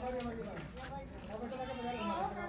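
Several people talking at once in the background, overlapping voices with no words coming through clearly.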